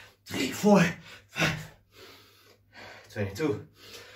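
A man gasping and breathing hard from the exertion of continuous burpees. There are loud, voiced, almost spoken breaths about half a second in, again at about one and a half seconds, and about three seconds in, with quieter breaths between them.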